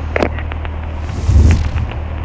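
Piper Warrior's four-cylinder Lycoming engine idling with a steady low drone, and a brief loud rumbling burst of noise about halfway through.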